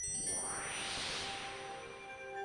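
Comcast logo ident sound: a chime struck at once with several ringing tones, under a whoosh that rises for about a second and then fades.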